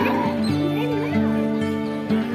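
Background music with long held notes, with brief voices of people in the first half-second.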